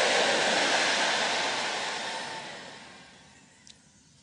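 A large congregation's shouted amen and cheering, loud at first and dying away over about three seconds.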